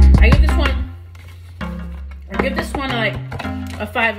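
Background music with vocals over a heavy, steady bass line. The bass is loud for the first second, then the music drops to a lower level.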